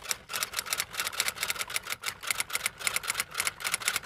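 Typing sound effect: a rapid, uneven run of typewriter-like key clicks, several a second.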